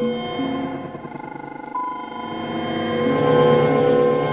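Granular synthesis from the netMUSE prototype: overlapping steady pitched tones as sound grains are triggered by expanding wavefronts. A new high tone enters a little under two seconds in, and the whole swells louder in the second half.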